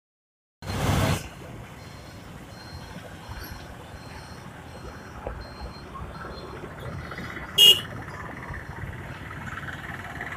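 Road traffic heard from a moving motorbike, a steady rush of engines and tyres. It opens with a loud burst of noise lasting about half a second, and a vehicle horn gives one short toot about three-quarters of the way through.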